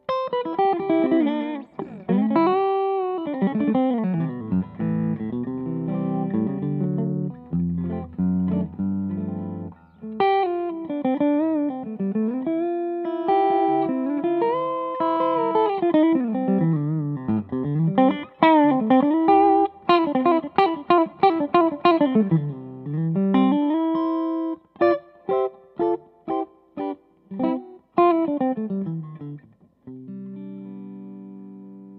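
Music Man Reflex electric guitar with DiMarzio pickups played solo, amplified: a single-note lead line with bent and sliding notes and fast runs. Near the end it breaks into a string of short, clipped staccato notes.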